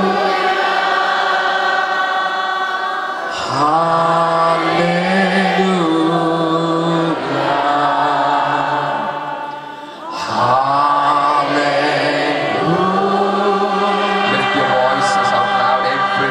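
A congregation singing worship, led by a voice on a microphone, in long held notes. The phrases break briefly about three and ten seconds in.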